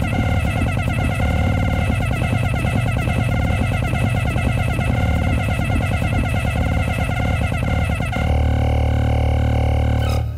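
Dense electronic music: many layered pitched tones flickering rapidly over a heavy low drone. About eight seconds in, it settles into a steadier held chord.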